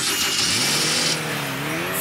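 Cartoon flying-saucer engine starting up under fairy magic, now running properly. A bright sparkly hiss for about the first second gives way to a humming engine tone that dips and then rises in pitch.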